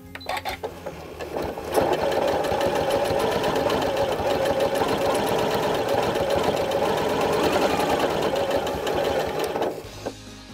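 Janome Continental M8 sewing machine free-motion quilting under its Accurate Stitch Regulator. It starts with a few separate slow stitches, then speeds up into steady, fast stitching as the fabric is moved, and stops just before the end.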